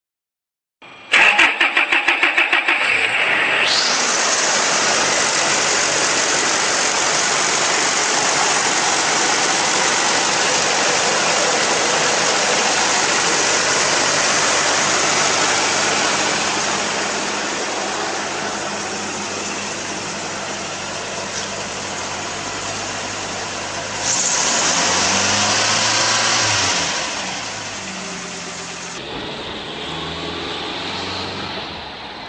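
Car engine fitted with a water spark plug ignition circuit being cranked, pulsing about three times a second, then catching about three seconds in and running steadily. It gets louder with shifting low tones from about 24 to 27 seconds in, then settles again.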